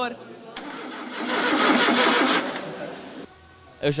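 A car engine starting up and running briefly in a workshop. It swells to its loudest about a second in, fades, and cuts off abruptly a little past three seconds.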